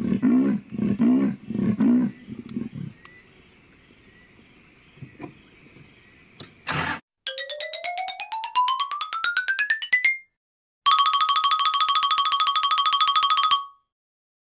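Female leopard's sawing roar, her call to a male: a run of hoarse rasping strokes about two a second, tailing off within the first three seconds. After a few seconds of quiet, an electronic jingle begins: a rapid series of tones climbing steadily in pitch, then a steady rapidly pulsing tone that cuts off suddenly.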